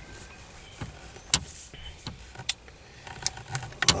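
A few light, scattered metal clicks of an Allen key turning the bolt that clamps a short-shifter mechanism to a gear stick, as it is done up tight; the clicks come closer together near the end.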